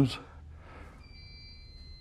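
Fire alarm sounding faintly in the background, a thin, high, steady tone that starts about a second in. It is set off by the tamper switch on the sprinkler riser's control valve as the valve is turned, signalling that the valve has been tampered with or closed.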